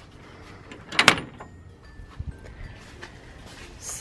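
A door being opened: one short scraping rush about a second in, then a couple of faint knocks.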